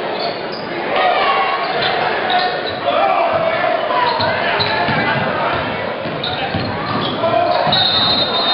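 Live basketball game sound in a gym: a ball dribbled on the hardwood floor, sneakers squeaking and players and spectators calling out, all ringing in the large hall.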